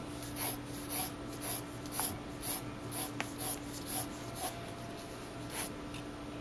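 Mechanical pencil drawing quick straight lines on paper, a light scratch with each stroke. There are about two strokes a second for four and a half seconds, about ten in all, then one more near the end.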